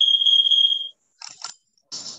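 A single steady, high-pitched electronic beep from a timer, lasting just under a second.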